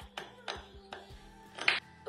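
Background music with a few short clicks and taps from a screw and metal bracket being handled on a wooden base board; the loudest click comes near the end.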